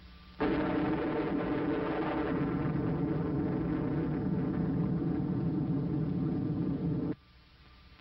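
Blast of a one-kiloton nuclear device detonated 17 feet underground, as heard on an old film soundtrack: a loud, steady noise down into the deep bass that starts suddenly about half a second in and cuts off abruptly after about seven seconds.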